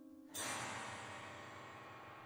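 A single ringing metal percussion strike about a third of a second in, its shimmer fading slowly over the dying tail of held piano notes.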